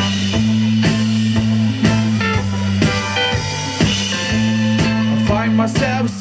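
Live indie rock band playing: a drum kit keeps a steady beat of about two hits a second under sustained bass notes and guitar.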